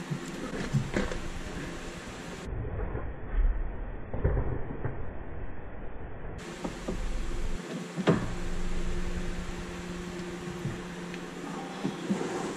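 Scattered knocks and rattles of tools and parts being handled, with a low rumble in the middle and a sharp knock about eight seconds in.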